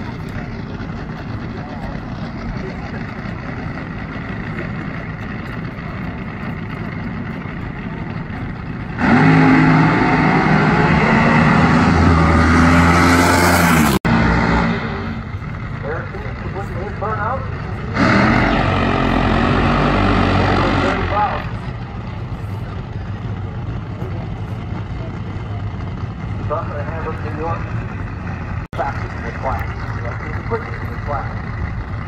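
Drag-racing car accelerating hard down the strip: a loud engine note climbing in pitch for about five seconds that cuts off abruptly, followed about four seconds later by another loud burst of engine noise lasting about three seconds. Spectator chatter throughout.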